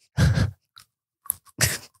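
Close-miked scratching of a man's moustache stubble: two short, crunchy rasps with faint ticks between them, picked up by the podcast microphone.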